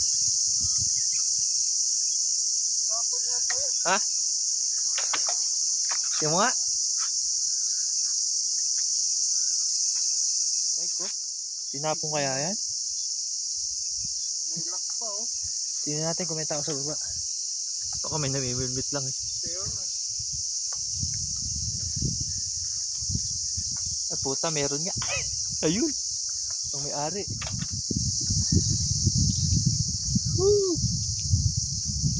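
Loud, steady, high-pitched chorus of insects droning without a break.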